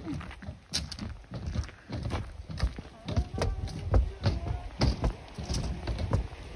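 Footsteps of several people walking across a footbridge: irregular thuds, about three a second.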